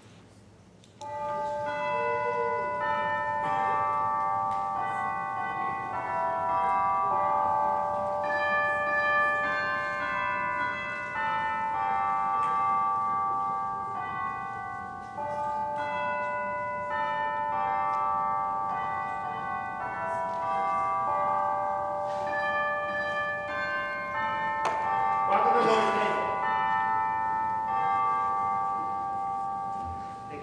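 A slow hymn melody played on bell-like chimes in sustained, overlapping notes, starting about a second in. A brief murmur of a voice comes over it near the end.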